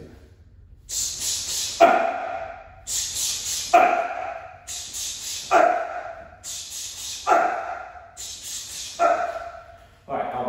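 A man's karate combination drilled five times: in each round, sharp hissing breaths as the punches go out, then a short, loud kiai shout, with a new round a bit under every two seconds.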